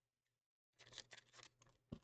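Faint crinkling of a trading-card pack's foil wrapper as it is handled, in short scattered rustles starting almost a second in.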